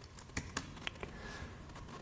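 A few faint clicks of computer keyboard keys being typed.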